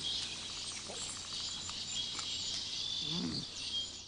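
Nature ambience of insects and birds chirping, a steady high chirring, with a short low rising-and-falling call about three seconds in.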